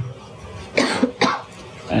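A man coughing, two short coughs in quick succession about a second in.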